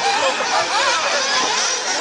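Several radio-controlled off-road racing buggies running on the track, their motors whining with pitch rising and falling as they speed up and slow down.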